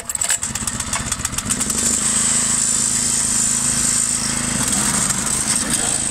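Small single-cylinder petrol engine driving a tracked chipper platform, pull-started on choke: it catches at once and fires unevenly for about a second, then picks up and settles into steady running after about two seconds.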